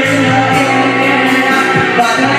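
Karaoke: a man singing into a handheld microphone over a loud backing track, his voice and the music amplified together.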